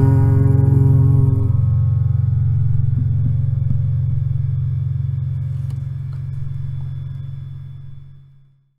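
A song's final guitar chord ringing out and slowly fading away, its low notes lasting longest.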